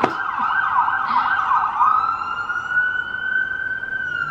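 Emergency vehicle siren passing: a fast warbling yelp that changes about halfway through to a slow, rising wail.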